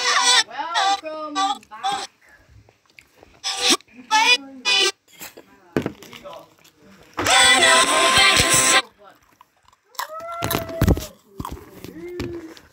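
Animated cartoon soundtrack: short wordless character vocalizations and a loud wail or scream, with cartoon sound effects and some music.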